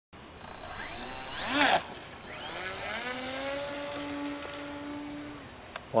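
Electric motor and propeller of a Parkzone Cub RC floatplane whining under throttle as it takes off from the water. The pitch rises sharply for about a second and a half and cuts off. It then climbs again and holds a steady pitch for a couple of seconds before fading near the end.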